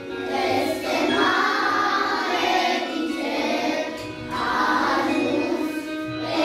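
A class of young children singing a Romanian Christmas carol together, with a short breath between phrases about four seconds in.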